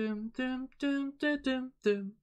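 A man humming a short melodic phrase from the song, about six short, evenly pitched notes in quick succession, voiced without words.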